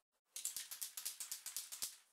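Aerosol spray paint can being shaken, its mixing ball rattling inside in a fast, even run of strokes that starts about a third of a second in.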